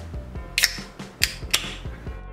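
Ring-pull on an aluminium drink can being lifted: three sharp clicks within about a second as the tab levers up and the lid cracks open.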